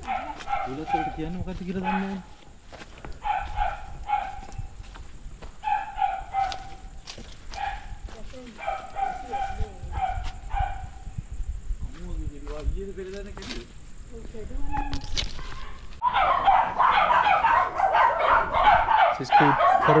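Repeated animal calls in short bursts every second or two. The calling turns denser and louder for the last few seconds.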